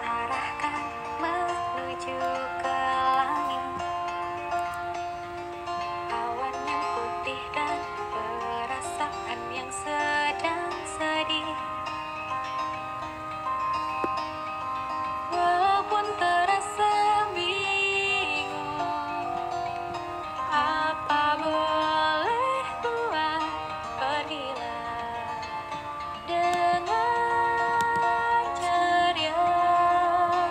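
Idol-pop song with female singing, playing without a break.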